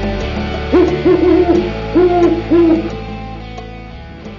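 Owl hooting: a quick series of low hoots between about one and three seconds in, laid over guitar music that fades away.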